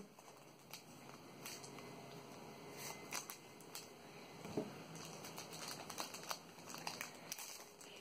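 Faint crinkling of a Pokémon TCG booster pack's foil wrapper as it is torn open and handled, with scattered small clicks.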